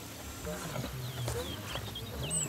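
Outdoor ambience of small birds chirping in quick, wavering high calls from about halfway in, with a low man's voice heard briefly underneath.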